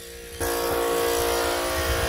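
An engine running steadily, a constant drone of unchanging pitch that comes in suddenly about half a second in and holds.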